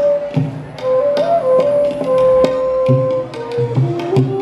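Bansuri (side-blown bamboo flute) playing long held notes with smooth slides between them, over tabla strokes in Indian classical style.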